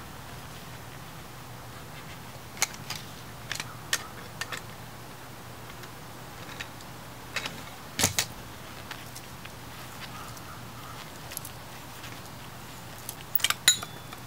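Scattered metallic clinks and knocks of a copper pipe and brass fittings being handled and worked loose, the loudest about eight seconds in and a quick cluster near the end, over a steady low hum.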